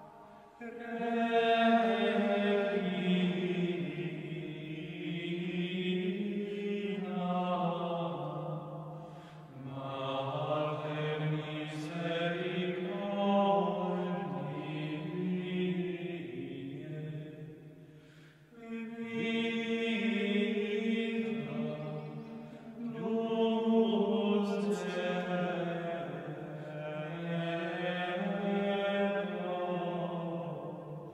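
Cistercian monks singing Gregorian chant, male voices on one slow, long-held melodic line, in phrases broken by short breaks about nine and eighteen seconds in.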